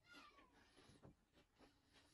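Near silence with faint mouth clicks of chewing, and a brief faint whine that falls in pitch at the very start.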